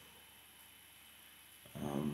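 Faint steady room hiss, then near the end a man's short wordless voiced sound, low in pitch, like a hum or drawn-out 'um'.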